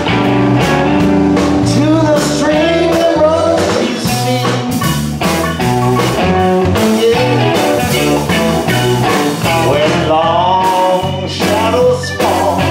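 Live blues band playing with drum kit, bass, keyboard and electric guitar, a lead melody line bending in pitch above the band.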